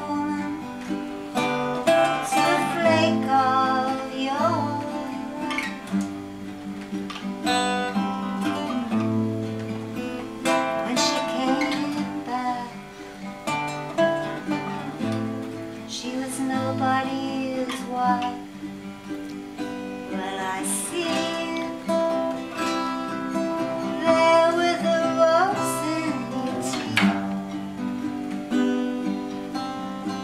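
Ukulele and two acoustic guitars playing together: a picked melody line over chords, with no words sung.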